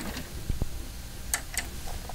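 A few short clicks and soft knocks as buttons are pressed on a Nakamichi ZX-9 cassette deck, over a low steady hum.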